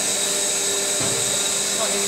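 Steady hum of biomass boiler plant machinery, an even motor-and-fan drone with several fixed tones, with a faint knock about halfway through.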